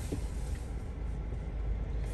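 Low, steady rumble of a car's engine and road noise, heard from inside the cabin.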